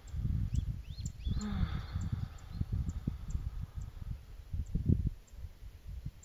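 Low, uneven rumble of air buffeting the microphone, coming and going in gusts, with a few faint high bird chirps about a second in.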